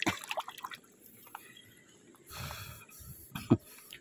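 Faint splashing and dribbling of shallow river water as a hand rubs and rinses a stone in it, with small irregular splashes in the first second. A brief sharp knock comes about three and a half seconds in.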